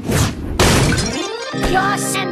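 A cartoon crash sound effect: something smashing and shattering, noisy and lasting about a second and a half. Then music with held chords comes in.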